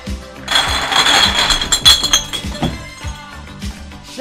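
A crowd of glass Snapple bottles clattering and clinking together loudly for about two seconds, with bright ringing glass notes, as they are cleared off a glass desk, over a song playing with a steady beat.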